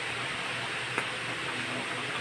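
A pot of fish and meat soup boiling on a stove, giving a steady hiss, with one faint click about a second in.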